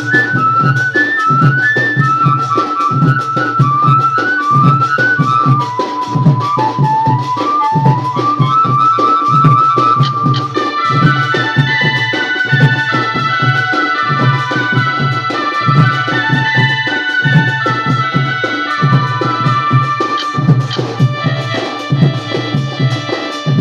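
A village band party playing a Koraputia folk tune through a loudspeaker stack: a high lead melody over a steady, even drum beat. About halfway through, the quick single-note melody gives way to fuller, held notes.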